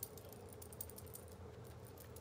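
Faint, irregular soft ticking and tapping of a damp makeup sponge being dabbed against the skin of the face, over a low steady hum.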